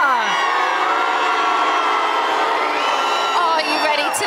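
Studio audience cheering and screaming: many high voices held together in a sustained din, with a voice breaking through near the end.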